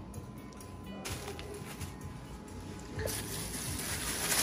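Faint background music under room noise, with a brighter hiss starting about three seconds in.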